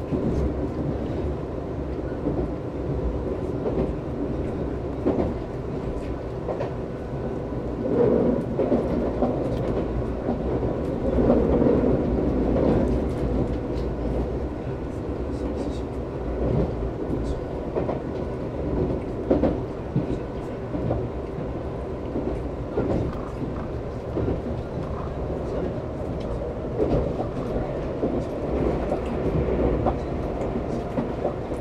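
Nankai 30000 series electric multiple unit running at speed, heard from the driver's cab: a steady running noise with irregular clicks of the wheels over rail joints and points, swelling louder for a few seconds near the middle.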